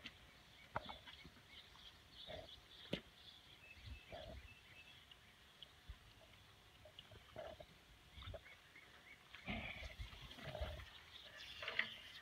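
Faint, scattered short animal noises and a few soft knocks and clicks over a quiet outdoor background, somewhat busier near the end.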